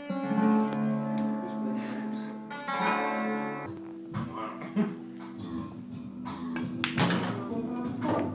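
Acoustic guitar being played: a chord rings out for the first three or four seconds, then shorter plucked notes follow.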